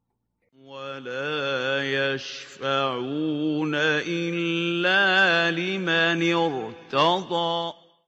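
A man reciting a Qur'anic verse in Arabic in the melodic, chanted style of tajwid recitation. He holds long notes that waver and glide up and down, with short breaths between phrases.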